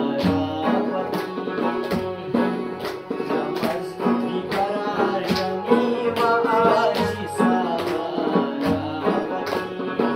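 Chitrali folk song: a man singing over a plucked Chitrali sitar, with a double-headed dhol drum and hand-clapping keeping a steady beat.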